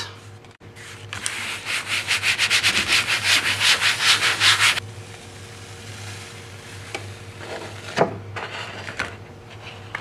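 Printmaking paper being rubbed down hard onto an inked gel printing plate to transfer the paint: quick back-and-forth rubbing strokes, about six or seven a second, that run for nearly four seconds and stop about five seconds in. A brief tap follows near eight seconds in.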